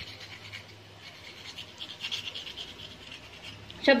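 Faint, irregular crackling and rustling of hands handling crisp fried potato fries, over a low steady hum. Speech begins at the very end.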